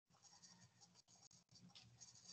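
Near silence: faint background hiss on the call audio.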